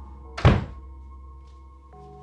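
A single sudden loud thud about half a second in, dying away quickly, over a low sustained drone of film score with steady held tones.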